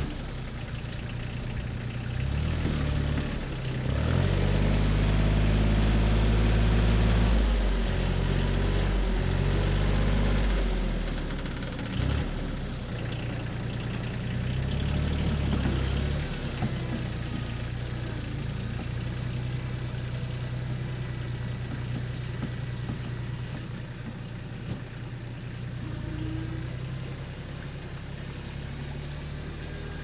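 Compact tractor engine running. It grows louder and heavier for several seconds as the front loader works, then settles back to a steadier, quieter run.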